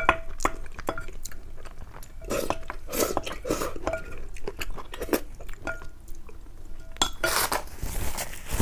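Wooden spoon scraping and knocking against a large glass bowl, gathering up the last of the curry and rice. Many sharp clinks, some leaving a brief ring from the glass, with softer chewing between them.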